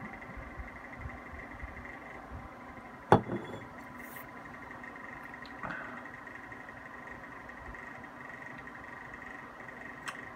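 Glass beer bottle knocked down onto a wooden table: one sharp knock about three seconds in, and a softer knock a little before six seconds. A faint steady hum runs under it.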